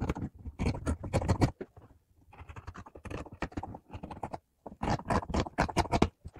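Scissors snipping through fabric in quick runs of cuts, with a short pause about two seconds in and again near the five-second mark; the middle run is quieter.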